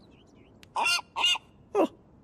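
Cartoon seagull squawking three short honking calls, each falling in pitch, the last one briefest.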